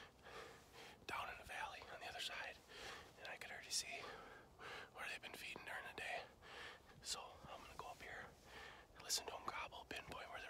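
A man whispering close to the microphone, his breathy words and sharp hissed 's' sounds the only sound.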